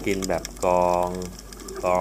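A man's voice speaking Thai, with one drawn-out syllable in the middle, over a faint background crackle of scattered clicks.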